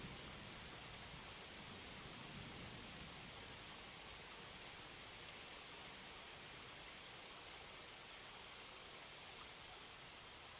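Faint, steady hiss-like noise that fades slowly, with a low rumble dying away in the first few seconds: the quiet tail of a music track.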